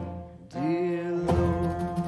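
A man singing a hymn to his own acoustic guitar. After a brief lull, a long held sung note begins about half a second in, with a guitar strum under it.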